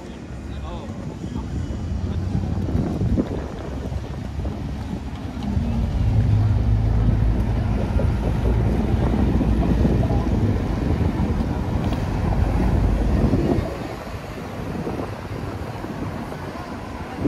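Low engine drone of a city bus passing close by. It swells about five seconds in and falls away after about thirteen seconds.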